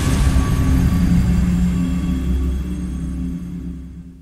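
A cinematic logo sting: a deep rumble with held low tones, dying away near the end.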